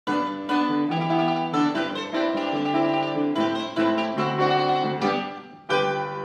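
Mandolin music: a quick melody of plucked notes over lower plucked bass notes, with a last chord near the end left to ring and fade.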